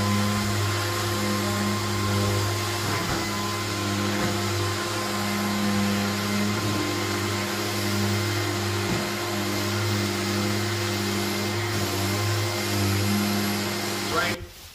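Mirka Leros long-reach electric drywall sander held against a ceiling, running together with its hose-connected dust-extraction vacuum: a loud, steady motor drone with a low hum that swells and eases slightly as the sander moves.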